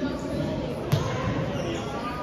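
A volleyball smacks once, sharply, about a second in, over the steady chatter of players in a large, echoing sports hall.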